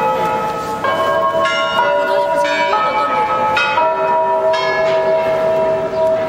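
Church bells pealing, several bells of different pitches struck one after another. A new strike comes every second or so, each ringing on under the next.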